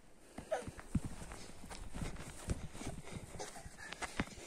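Irregular footsteps and soft thuds on grass as a toddler runs after and kicks a small ball, with the person filming walking close behind. There is a short high squeak about half a second in.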